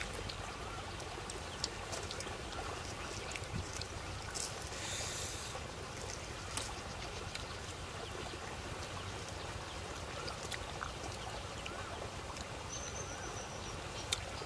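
Steady low rumble of wind on the microphone, with scattered soft clicks and smacks of eating grilled fish by hand, and a short high chirp near the end.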